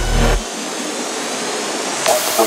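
Psychedelic trance track breaking down: the kick drum and bass cut out about half a second in, leaving a sustained synth noise sweep with faint rising high tones.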